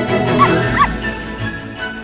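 Two short, high dog yips, a cartoon bark sound effect, about half a second apart over holiday intro music.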